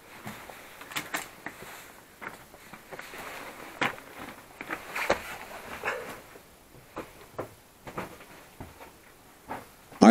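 Irregular clicks, scuffs and knocks of feet and loose stones shifting on a floor of broken rock rubble, with no steady rhythm.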